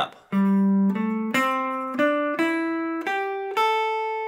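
PRS SC 594 electric guitar played one note at a time, about seven notes stepping up the A minor pentatonic box 1 from the G on the fourth string to the A on the first string, with the last note held and ringing.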